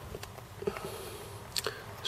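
A few faint clicks and taps from desoldering a transistor on a circuit board with a soldering iron and a solder sucker, over low room noise.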